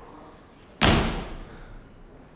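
A single loud slam about a second in, fading away over about half a second.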